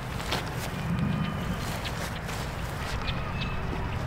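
Outdoor ambient noise: a steady low rumble with a few faint clicks and short high chirps.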